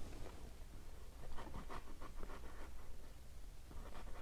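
Faint scratching and dabbing of a small paintbrush stroked across an oil painting, in a short run of strokes about a second in.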